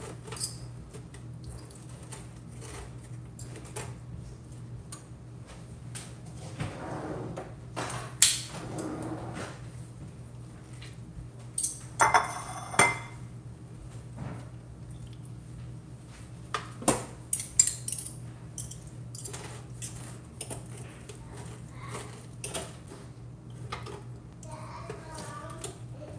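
Metal serving utensils clinking and scraping against a metal baking tray and a ceramic plate as baked spaghetti squash is scooped out and served, with scattered sharp clinks, the loudest about eight seconds in, over a steady low hum.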